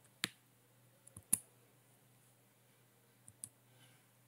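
Several sharp computer-mouse clicks, spaced out: one a quarter second in, a small cluster about a second later, and a pair near the end, advancing the lecture slides.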